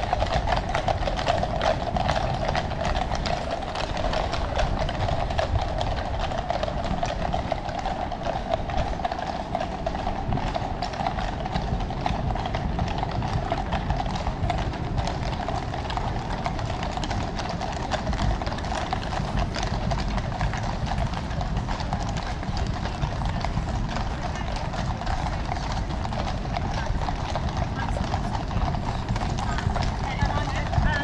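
Shod hooves of a column of Household Cavalry horses clip-clopping on the road, many hooves at once, strongest near the start as the troop passes.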